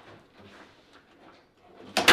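Foosball table rods and player figures giving faint clicks and rattles as they are worked, ending in a sharp clack near the end.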